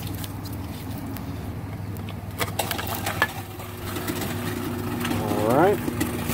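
A 3/4 hp two-stage InSinkErator garbage disposal, just plugged in: a few clicks, then about four seconds in its motor starts and runs with a steady hum. A short rising voice sound comes near the end.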